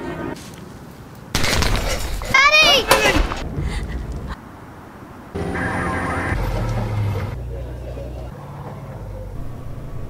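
Soundtrack of a war-themed charity advert. About a second in comes a loud crash of noise with a wavering, high wail over it. After a short lull, a second noisy stretch follows with a low rumble.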